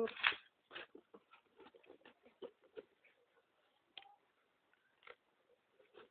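Faint, scattered taps and rustles of a cardboard box being handled and its flaps folded into shape.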